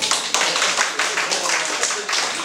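Small audience applauding, a dense patter of irregular hand claps with faint voices underneath.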